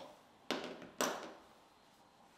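Two sharp taps about half a second apart, each dying away quickly.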